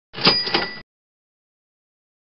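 A short sound effect: two quick strikes with a bright bell-like ring, cutting off sharply after less than a second.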